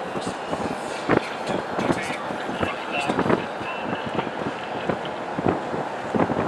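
A car driving, heard from inside the cabin: steady road and wind noise with several short knocks, and indistinct voices under it.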